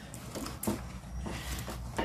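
Hand rummaging inside a fabric pocket of a hanging pocket organizer, with soft rustling and a few light clicks as the fabric and the slips inside are handled.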